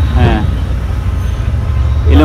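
Steady low rumble of road traffic, with a brief snatch of voice shortly after the start.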